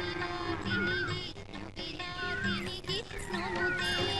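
Soft background film music: a short melodic phrase with a gliding note that comes back about every second and a quarter, over steady low sustained tones.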